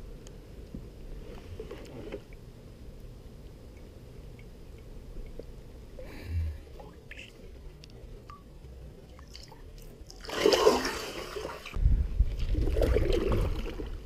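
Water sloshing and splashing beside a small inflatable boat, quiet at first, with a louder splash about ten seconds in, followed by a low rumble of the water and oars as rowing begins near the end.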